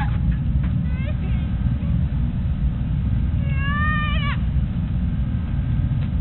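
Steady low wind rumble on the microphone, with a distant high-pitched yelling call about three seconds in that rises slightly and then drops off sharply. There are fainter short calls about a second in.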